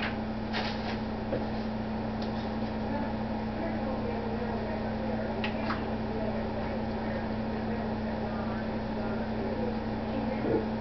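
A steady electrical hum from a kitchen appliance, with a few light clicks and scrapes as a spoon and plastic tub are handled to scoop cottage cheese onto a pizza.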